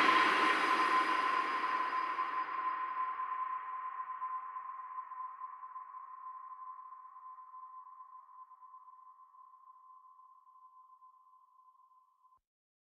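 The final note of an electronic trap-pop track dying away: a full reverberant tail that fades over about eight seconds. One high, steady ringing tone outlasts the rest and fades out near the end.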